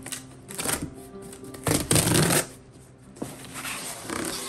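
Cardboard shipping box being opened by hand: the flaps are pulled apart and the inner box scraped out in three short rustling, scraping bursts, the loudest about two seconds in. Faint background music runs underneath.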